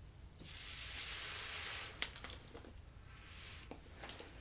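Air blown through a drinking straw onto wet acrylic paint: a breathy hiss lasting about a second and a half, a sharp click, then a shorter, fainter puff near the end.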